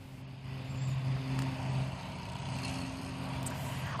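A steady low mechanical hum with a faint rumbling haze underneath, a little louder between about one and two seconds in.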